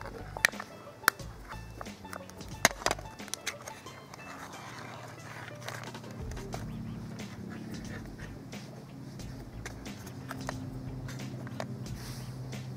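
Ring-pull lid of a metal food tin being cracked open and peeled back, with a few sharp metallic clicks in the first three or four seconds. A steady low drone runs underneath for the rest.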